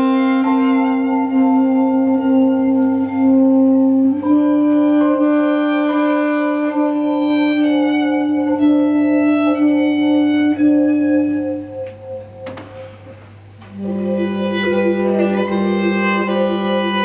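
Live jazz trio of violin, tenor saxophone and vibraphone playing: long held low notes with shorter higher notes moving above them. About twelve seconds in the music drops quiet for a moment, then comes back in on a new, lower held note.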